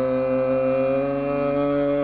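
Carnatic classical music in raga Hindolam: one long held melodic note that rises slightly about a second in, over a low steady drone.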